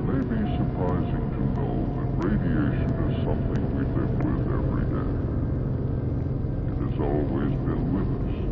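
Unintelligible, wordless voice sounds over a steady low hum and rumble.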